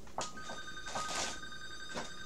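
Telephone ringing in the room: a steady electronic ring of two high notes held together, starting a moment in and lasting about two seconds.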